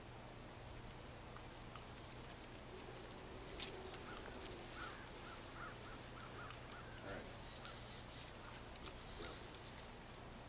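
Faint outdoor ambience with a bird calling in a run of short repeated notes, about two a second, from about four seconds in; a single sharp click comes just before the calls begin.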